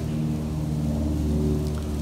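A steady low mechanical hum made of several even tones, like an engine running.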